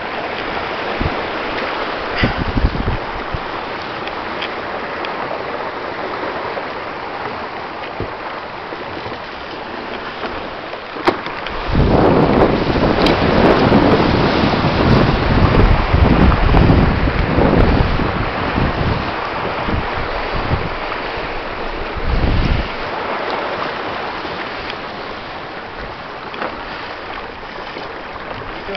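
Rushing wind and water as a Ranger 22 sailboat runs fast downwind under spinnaker in a strong breeze, with wind buffeting the microphone. For about ten seconds in the middle the buffeting turns loud and rumbling, then settles back to a steadier rush.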